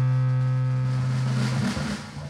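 Low, steady amplified drone note from an electric guitar rig, held with a humming tone until it cuts off about a second and a half in. A short clatter follows near the end.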